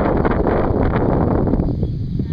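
Wind buffeting the microphone: a loud, steady rumbling rush with no pitch, easing off at the very end.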